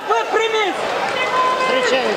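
Several voices calling out over one another, the loud voice noise of spectators and team members during a judo bout.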